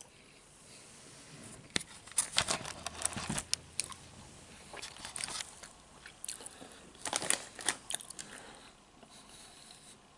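Doritos tortilla chips crunched and chewed close to the microphone, in irregular clusters of sharp crunches about two, five and seven seconds in.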